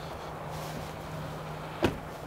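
A steady low hum under faint background noise, broken by one sharp click near the end.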